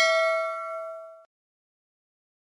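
Notification-bell ding sound effect from a subscribe-button animation: one bell-like ring of several clear tones that fades out about a second and a quarter in.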